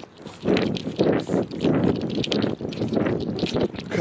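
Footsteps of a person hurrying over a grassy field, in a steady rhythm of about two steps a second.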